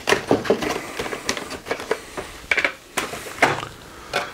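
Cellophane-wrapped TDK SA-X 90 cassettes being handled in their cardboard ten-pack box as one is pulled out: a run of light, irregular plastic clicks, taps and rustling scrapes.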